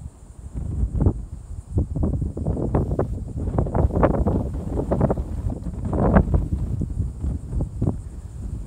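Wind buffeting the microphone in irregular gusts: a low rumble with crackling, over a faint, steady high hiss.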